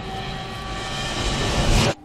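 A rushing, aircraft-like roar swells louder over held music tones, then cuts off suddenly near the end.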